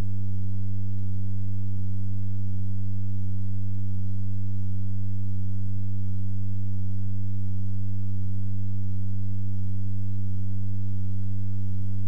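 Loud, steady electrical hum: one low buzzing tone with evenly spaced overtones above it, holding constant without any change.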